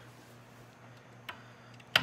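Two light metallic clicks from a hand working the locking latch on a steel motorcycle lift jack, the second sharper and louder, over a low steady hum.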